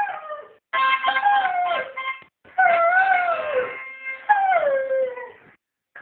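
Hungarian Vizsla howling along to a harmonica: three long howls, each sliding down in pitch, with short breaks between, over the harmonica's held notes.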